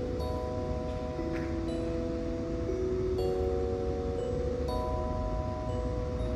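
Gentle background music of held, chime-like notes that shift pitch every second or so, over a low rumble.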